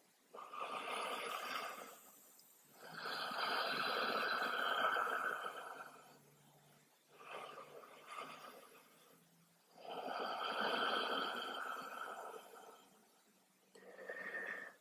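A woman's slow, deep breathing in a yoga resting pose: three long, soft breaths, each lasting two to three seconds, with pauses between them.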